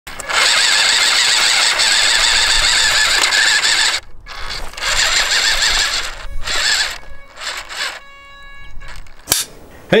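Whine of a WPL B36-3 1/16 RC six-wheel truck's small electric motor and gearbox as it crawls over rock, running steadily at first, then cutting out about four seconds in and coming back in several short bursts. Near the end there is a quieter steady pitched hum, then a sharp click.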